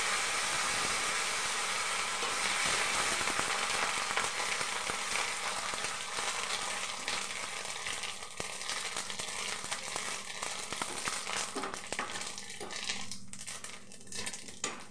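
Neem leaves frying in hot oil in a wok: a sizzle that is loud at first and slowly dies down, breaking into sharper crackles and pops near the end as the leaves are stirred.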